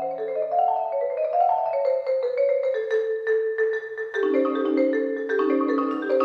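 Concert marimba played with mallets in a fast, continuous stream of struck notes, each ringing briefly. Mid-range figures move up and down, and lower notes join in about four seconds in.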